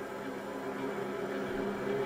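Faint, steady arena background noise with a low hum, growing slightly louder.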